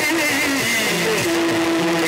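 Yakshagana stage music: a melody that settles on one long held note about a second in, wavering slightly near the end.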